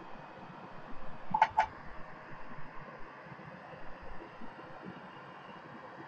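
Quiet scattered handling sounds of hands working on the wiring inside a metal disk drive case. About a second and a half in, two short, high chirps come close together.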